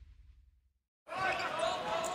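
Basketball game sound: a faint low rumble fades to silence, then arena noise with crowd voices and a ball bouncing on the court starts suddenly about a second in, at a cut between highlight clips.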